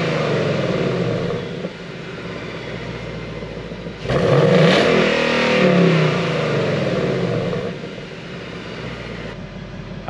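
2020 Ford Mustang GT's 5.0-litre V8 with a Mishimoto X-pipe, its exhaust set to quiet mode, being free-revved behind the car. One rev dies back to idle a little under two seconds in, and a second rev rises about four seconds in and falls back to idle near eight seconds.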